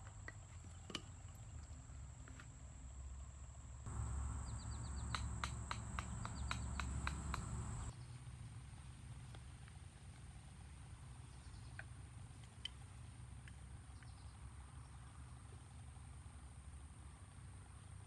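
Knife strokes whittling a wooden atlatl: a run of sharp clicks from about four to eight seconds in, over a low rumble. A steady high insect whine runs behind it, fading after the strokes stop.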